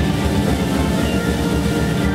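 Progressive rock band playing live: a loud, dense passage of sustained keyboard chords over a steady pulsing bass and drums.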